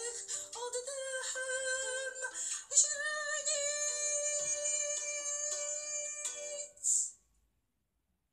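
A song with a sung vocal holding long, wavering notes over accompaniment; the music cuts off abruptly about seven seconds in.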